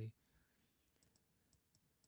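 Faint computer keyboard clicks: a handful of scattered keystrokes, quiet and irregular, as code is typed.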